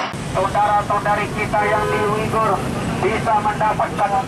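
Raised voices of a street demonstration, shouting or chanting with drawn-out notes, over a steady bed of road traffic noise.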